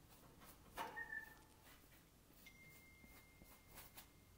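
Faint scratchy strokes of a flat paintbrush on canvas, working acrylic paint, a little louder about a second in. A faint thin steady high tone comes in halfway through.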